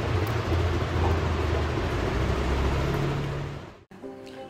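A steady low rumble like a running motor, with a hiss of noise over it; its low hum steps up a little in pitch about three seconds in, and it cuts off abruptly just before the end.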